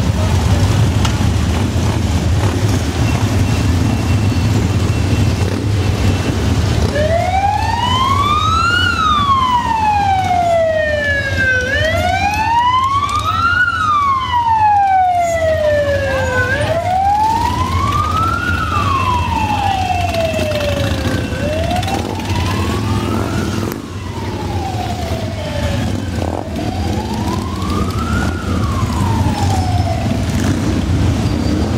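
A siren wailing, starting about seven seconds in and rising and falling slowly, about five seconds to each rise and fall. Under it is the steady low rumble of a large pack of motorcycles, many of them Harley-Davidsons, riding slowly.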